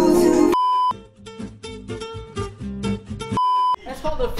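Music cuts off about half a second in and a short steady electronic beep sounds. Soft, sparse musical notes follow, then a second identical beep just before the end.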